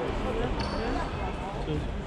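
Futsal ball and players' feet thudding on a wooden sports-hall floor during play, with knocks at irregular intervals.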